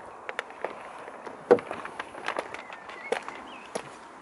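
A few footsteps and light knocks on tarmac at an uneven pace, over faint steady outdoor background noise.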